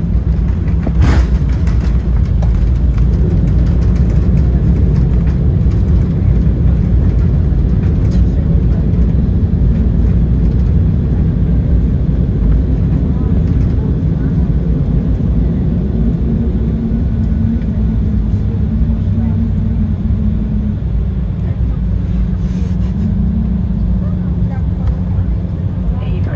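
Cabin noise of an Embraer E190 rolling on the runway: a steady, loud, deep rumble from its GE CF34-10E turbofans and the wheels, with a single thump about a second in. A hum in the rumble drops slightly in pitch near the end.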